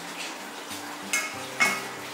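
Chopsticks clinking twice against a ceramic bowl or plate, about half a second apart, each a short ringing tap.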